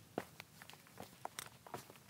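Faint, irregular crackling clicks of footsteps on dry wood-chip mulch and leaf litter, several a second.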